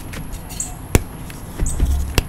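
Hands rubbing and patting through powdered gym chalk on a tray, with one sharp knock about halfway and a few dull thumps near the end as a chalk block is handled.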